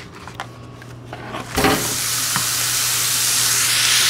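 A block of raw ground turkey meeting a hot skillet: after a few faint handling clicks, sizzling starts suddenly about a second and a half in and holds steady, slowly getting louder.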